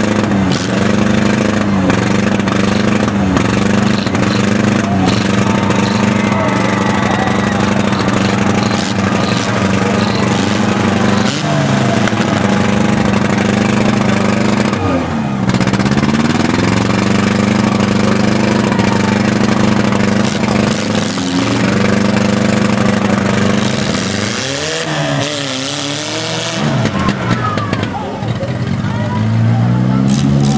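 Engines of compact demolition-derby cars running together, revving down and back up about halfway through and again near the end, with occasional knocks.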